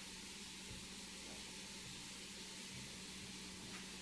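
Faint steady hiss of room tone with a low hum underneath.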